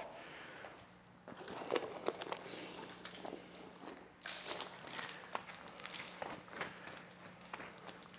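Faint handling sounds of hand car washing: a wash mitt wiping over soapy car paint, with scattered soft clicks and a brief louder rub about four seconds in.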